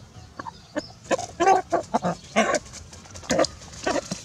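Short, harsh animal squawks and squeals in a quick, irregular run, starting about a second in, from a rooster and a young macaque scuffling as the monkey grabs at the bird.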